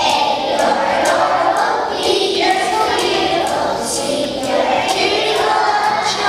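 A large choir of kindergarten children singing a song together.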